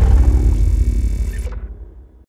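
Tail of an animated outro's sound effect: a deep low rumble dying away, its brighter top cutting off about three-quarters of the way in and the rumble fading out at the end.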